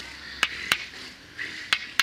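Sharp percussive strikes in a steady rhythm, coming in pairs about a third of a second apart, one pair every second and a bit.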